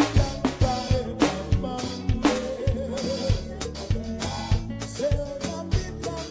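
Drum cover on an Alesis electronic drum kit played along to a recorded kompa song: a steady kick-drum beat with snare and cymbal hits over the song's wavering melody line.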